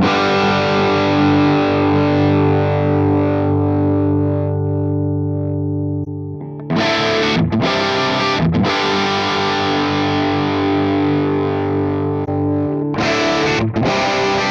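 Distorted electric guitar played through a NUX MG-300 multi-effects pedal's amp and cabinet model: a chord held and ringing out for about six seconds, then a few chords struck and held, with short chopped chords near the end.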